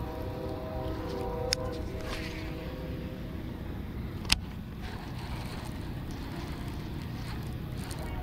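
Baitcasting reel on a cast and retrieve: the spinning spool gives a steady whirring hum that stops with a sharp click about a second and a half in. About four seconds in there is another sharp click as the handle is turned to engage the reel, followed by a low steady noise as the reel is cranked.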